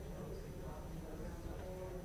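Indistinct murmur of many people talking at once, with no single voice standing out.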